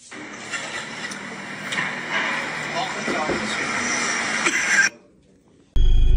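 Outdoor noise from a phone recording with faint, indistinct voices now and then, cutting off suddenly about five seconds in.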